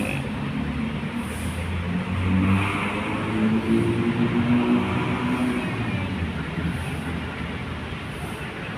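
A bus engine running nearby. Its pitch climbs a little about two seconds in, holds, then eases off and fades toward the end.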